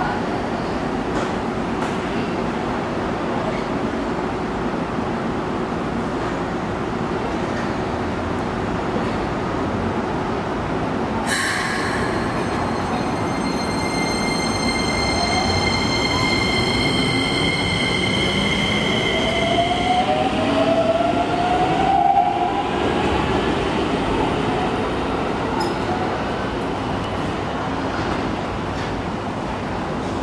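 Keikyu 1000 series stainless-steel electric train pulling out of the station, with running noise throughout. A steady high ringing tone sets in suddenly about eleven seconds in and stops around twenty seconds, while the traction motor whine rises in pitch as the train gathers speed.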